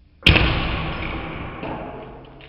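A crossbow-launched porcupine quill striking an iPhone X propped on a board: one sudden loud hit about a quarter second in, fading out slowly over about a second and a half. The quill is too fragile to damage the phone.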